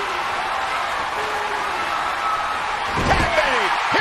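Arena crowd cheering steadily, then, about three seconds in, a quick run of heavy thuds on the wrestling ring's mat as wrestlers are slammed and land on it.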